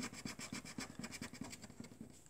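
Scratch-off coating being scraped off a scratchcard with a flat metal scraper: faint, quick strokes, about ten a second, that stop near the end.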